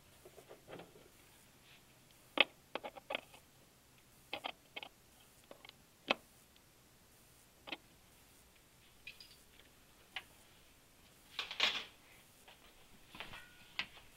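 Scattered light clicks and knocks from hands and parts being handled, with a brief scuffing rustle about eleven and a half seconds in.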